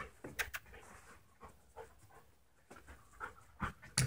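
A dog panting in short, irregular breaths, with two sharp clicks about half a second in.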